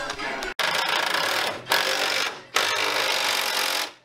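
Cordless impact wrench running in three bursts of about a second each, after a sharp cut about half a second in.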